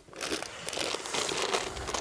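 A packet of walnuts crinkling steadily as it is handled.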